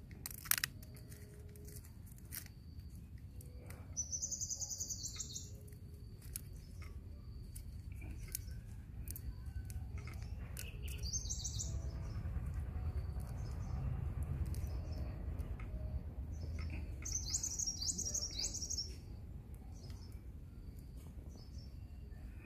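A small songbird singing short phrases of high, rapid chirping notes, three bouts several seconds apart: about four, eleven and seventeen seconds in. Under it runs a steady low rumble, with a sharp click about half a second in.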